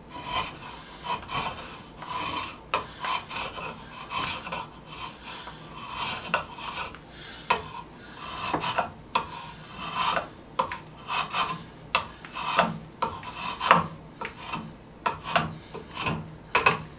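Draw knife shaving a hickory sledgehammer handle: a run of short, irregular scraping strokes of steel cutting wood, roughly one or two a second, as the handle is trimmed to fit the hammer's eye.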